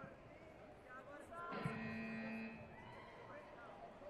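Electronic buzzer sounding once, a steady tone for about a second, as the match clock runs out: the end-of-match signal. Arena crowd chatter and calls go on underneath.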